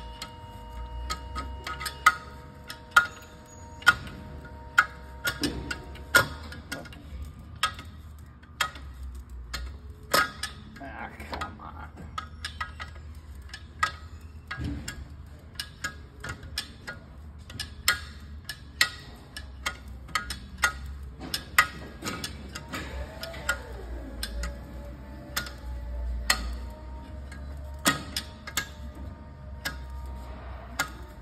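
Sharp metallic clicks at irregular intervals, about one a second and some much louder than others, as a Maserati engine is turned over by hand with a wrench.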